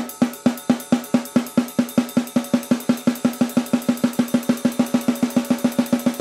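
Snare drum struck with alternating sticks in an even stream of single hits, gradually speeding up from about four to about six hits a second, each hit ringing briefly.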